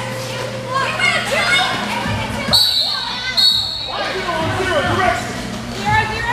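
A referee's whistle blown twice in quick succession, about two and a half seconds in, over the steady chatter and shouts of skaters and crowd.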